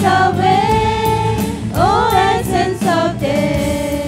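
A Christian worship song sung by a small group of female voices together, backed by bass guitar and acoustic guitar; one sung note bends up and back down about halfway through.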